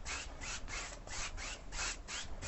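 Wide flat bristle brush scrubbing oil paint back and forth on a canvas coated with wet liquid white, a rhythmic rasping of about four to five strokes a second.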